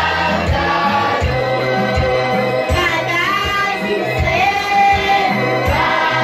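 A choir singing a hymn, with a steady beat and held bass notes underneath.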